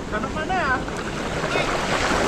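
Wind rushing over an action-camera microphone on a moving mountain bike, with a person's brief wavering call about half a second in.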